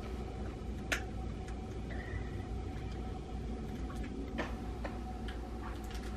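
Steady low room hum with a few light clicks and taps, the loudest about a second in, from a baby handling plastic toys in a playpen.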